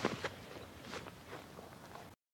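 Faint footfalls and scuffs of studded feet on grass as a tackler drives a ball carrier through the tackle: a slightly louder thud at the start, then a few soft steps.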